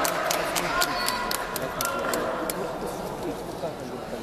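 Applause after the fighters' introduction: hand claps at about four a second that stop about two and a half seconds in, over a murmur of voices in the crowd.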